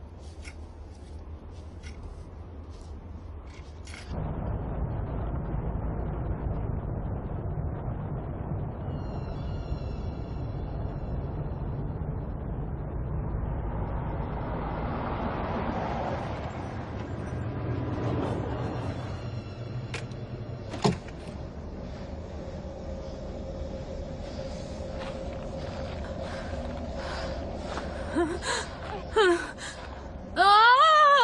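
Film soundtrack: the low rumble of a car driving, heard from inside the cabin, starting about four seconds in, under a faint held music tone. A single sharp click comes about two-thirds of the way through, and short gasp-like vocal sounds come near the end.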